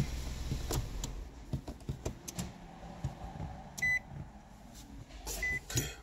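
Scattered clicks and knocks of handling, with two short high electronic beeps, one about four seconds in and another near the end.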